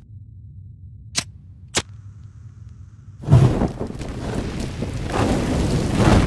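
Two sharp clicks, then about three seconds in a sudden loud burst that runs on as a steady rushing noise and swells again near the end: a cartoon sound effect of flames flaring up and burning.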